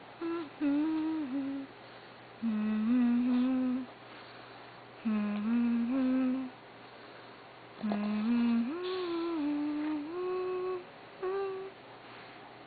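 A dog making humming moans in its sleep: about six low, pitched hums, one per breath out with pauses between, several stepping up or down between two or three pitches.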